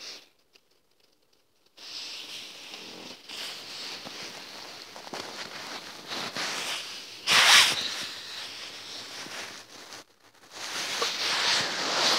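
Fabric rustle: pillows and bedding rubbing directly against the phone's microphone, in uneven scraping swishes with a louder burst about seven seconds in. The first second or so is near silence.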